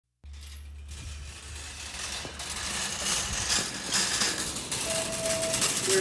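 Opening of a music track: a low steady hum, then a gradually swelling wash of clicking, rattling noise, with a brief held tone near the end.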